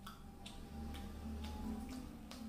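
Close-up eating sounds: chewing with the mouth closed, with about five sharp little clicks, roughly two a second, from the mouth and from fingers picking food off a paper plate.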